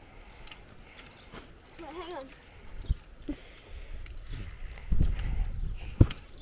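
Child bouncing on a trampoline: dull thumps of the jumping mat, the loudest about five seconds in as he lands flat on his front. A short vocal sound from the child comes about two seconds in.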